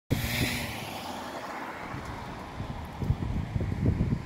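Wind buffeting the microphone: irregular low rumbling gusts over a steady rush of open-air noise, the gusts growing stronger in the last second or so.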